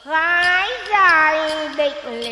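Vietnamese xẩm folk music: a bent, sliding melody line, with light clicks keeping time behind it.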